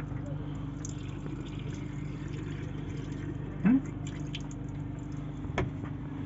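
Thin stream of tap water running into a small sink basin, over a steady low hum. A short click comes near the end.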